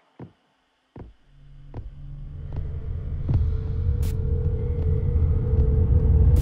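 Horror-trailer sound design: a moment of near silence broken by a couple of clicks, then a low throbbing drone swells in and holds. Scattered ticks run over it, a steady mid-pitched tone joins about three seconds in, and a sharp hissing hit lands about four seconds in.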